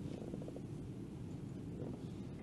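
Faint, steady low rumble of room noise picked up by the open table microphones, with a few faint ticks just after the start.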